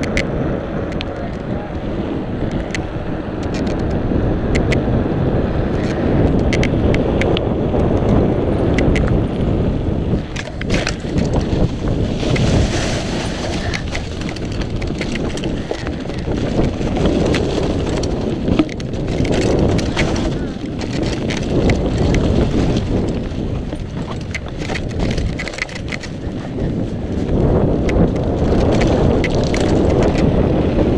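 Wind rushing over the microphone of a mountain bike ridden at speed, with the tyres rolling over pavement and then through dry fallen leaves on a dirt trail. Frequent clicks and knocks come from the bike rattling over bumps.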